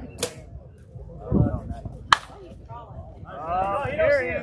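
Softball bat striking a pitched ball: one sharp crack about two seconds in, with players' voices before it and shouting near the end.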